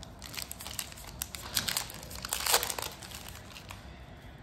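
Foil wrapper of a Yu-Gi-Oh 2022 Tin of the Pharaoh's Gods booster pack crinkling and tearing as it is opened by hand, a run of crackles loudest about two and a half seconds in and dying down near the end.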